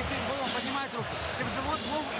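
Speech: a boxing trainer talking to his boxer in the corner between rounds, with no other clear sound.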